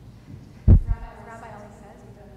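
A loud, deep thump about two thirds of a second in, with a smaller second one right after it. A faint voice follows from about a second in.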